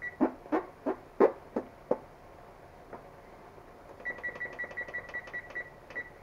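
Electronic oven control panel being set: about six quick button taps in the first two seconds, then a fast run of about a dozen short, high-pitched beeps as the cooking time is entered.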